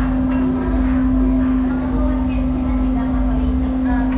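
A steady machine hum holding one constant pitch, with a low rumble beneath it and indistinct voices in the room.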